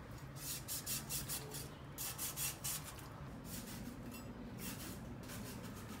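Faint rasping strokes of a cleaver cutting meat on a wooden chopping board, coming in three short quick runs.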